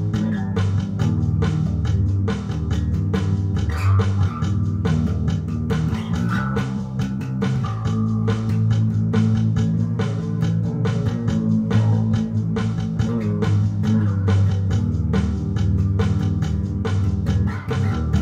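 Electric bass guitar playing a driving rock bass line in a steady stream of low notes, with sharp hits marking a fast, even beat throughout.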